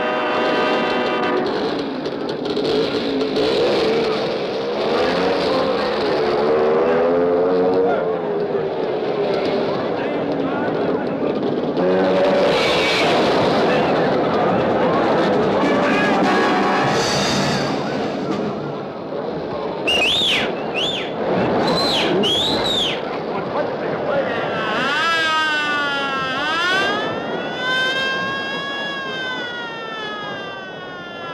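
Cartoon soundtrack of music mixed with car sound effects, ending in sirens that wail up and down over the last few seconds.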